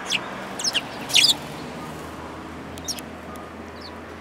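Eurasian tree sparrows chirping: a few short, high chirps in the first second and a half, the loudest a quick cluster just over a second in, and one fainter chirp near three seconds.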